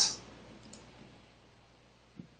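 Faint computer mouse clicks against quiet room tone as a screen-share button is clicked without response, after a short hiss right at the start.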